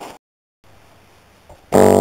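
A single low key struck on a 1981 Rhodes Seventy Three electric piano near the end, its tine note starting suddenly and ringing on with many overtones. The tine is held by a newly fitted Vintage Vibe tine stabilizer kit (replacement grommets and spring).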